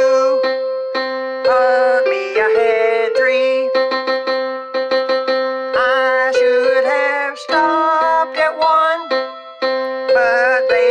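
Man singing a song over electric keyboard accompaniment, with a sustained note held under several sung phrases.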